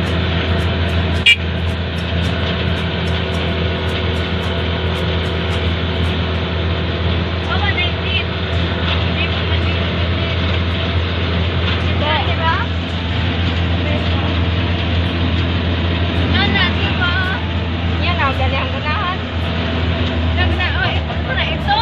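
Vehicle engine running at a steady drone, heard from inside the cab while driving along the road, with a single sharp knock about a second in. Voices or singing come through faintly at times.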